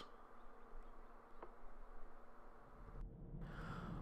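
Faint steady hum inside a car cabin. About three seconds in it gives way to the low rumble of the Nissan Leaf driving.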